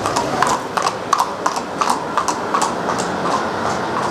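Hooves of a ridden horse walking on an asphalt street: an even clip-clop, about three clacks a second, over steady background noise.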